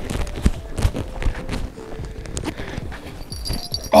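Hurried footsteps in snow on a frozen lake: a run of irregular soft crunching thuds, roughly two or three a second.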